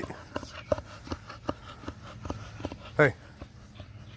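Two American Bully dogs nosing at each other: a scatter of short, soft clicks and sniffs. A man's sharp 'hey' about three seconds in is the loudest sound.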